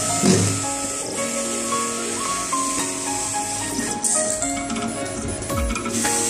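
Automatic label cutter running a cut job: its motors give steady whining tones that jump from pitch to pitch as the cutting head and feed rollers move, over a constant hiss, with a few falling low sweeps near the end.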